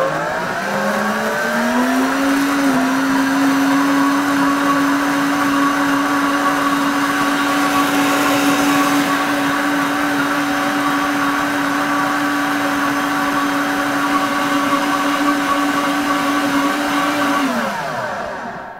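Countertop blender running, puréeing fruit, leafy greens and a little water into a smoothie. The motor climbs in pitch as it spins up over the first couple of seconds, holds a steady high hum, then winds down and stops just before the end.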